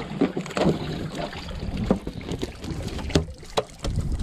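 Water lapping against a small boat's hull on open sea, with wind on the microphone. A couple of sharp clicks come about three seconds in.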